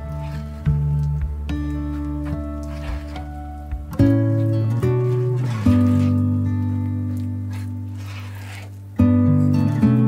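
Gentle instrumental background music of plucked, ringing notes; fresh chords are struck about four and nine seconds in and fade away between.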